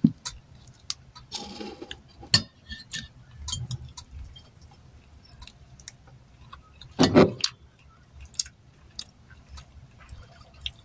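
A person eating with gloved fingers: scattered sharp clicks and small clinks as food is picked from a plate and steel tray, with mouth sounds of chewing. The loudest sound is a short burst about seven seconds in.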